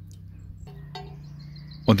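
A quiet pause with a low, steady hum that strengthens a little under a second in, and a faint click about a second in.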